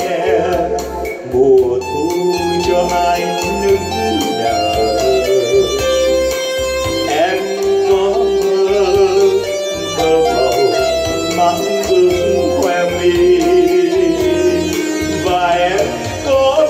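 A man singing into a microphone with a live electronic keyboard accompaniment and a steady bass beat, played through a PA system.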